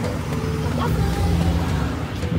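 Steady low rumble of road traffic on the street below, with a faint voice over it.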